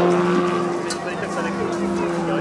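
Large-scale RC Pitts Special biplane's 3W engine running steadily in flight, a continuous drone holding one pitch.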